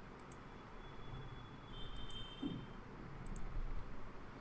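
A few faint computer mouse clicks over quiet room noise.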